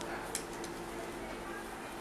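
Quiet room tone with a faint steady hum, and a couple of light clicks early on as the cloth napkin with its beaded napkin ring is handled.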